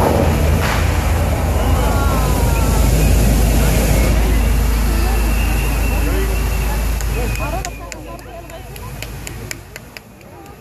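Many tall fountain jets rushing, a steady loud spray with a heavy rumble, under indistinct crowd voices. About eight seconds in the rush falls away as the jets shut down, leaving the voices and a few light clicks.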